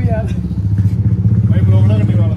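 A motor vehicle engine running steadily and loudly close by, with a deep, even pulse. Voices talk faintly over it.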